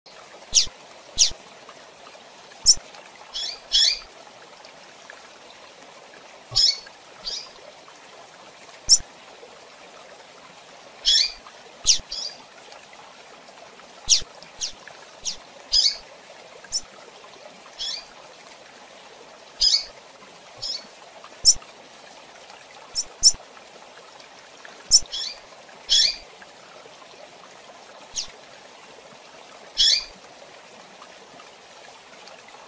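A female double-collared seedeater (coleiro) calls with short, sharp, high chirps, singly or in quick pairs, every second or two. A steady background hiss runs underneath.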